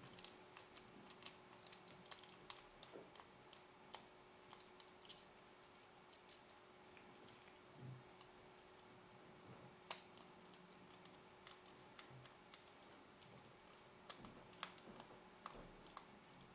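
Faint, irregular small clicks and ticks of a precision screwdriver working tiny screws out of the plastic barrel of a Canon EF-S 17-85mm zoom lens, with the barrel being turned in the hand.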